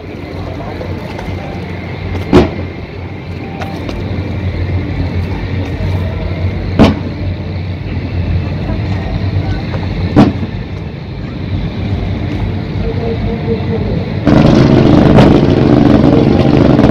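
Fireworks display: three sharp, loud bangs of bursting shells a few seconds apart over a steady background din. Near the end a louder, continuous noise sets in.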